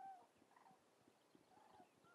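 Near silence, with a few faint, short calls of distant birds: one at the start and another about a second and a half in.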